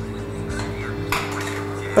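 Soft background music of steady held tones, with no speech. Its lowest notes drop out a little after a second in.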